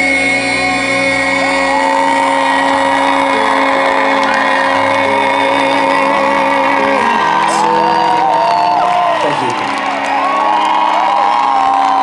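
Concert crowd cheering and screaming, with many short high whoops, over a held chord from the band that stops about seven seconds in.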